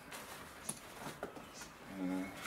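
Handling of a Tatonka Bison nylon backpack: fabric rustling, with a few small, sharp clicks as the straps and buckles on its lid are worked.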